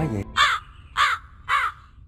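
A crow cawing three times, about half a second apart, over a sudden hush, dropped in as an edited comic sound effect.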